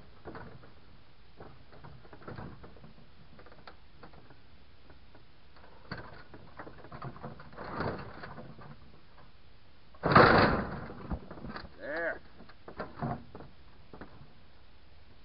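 A large mounted backhoe tire being worked over the side of a metal utility trailer with scuffs and knocks, then falling onto the ground with one heavy thud about ten seconds in, the loudest sound here.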